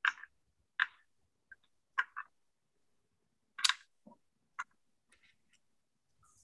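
Small clicks and taps of a screwdriver and wooden kit parts being handled while a small screw is driven in. About seven sharp clicks come at uneven intervals, the loudest a little under four seconds in.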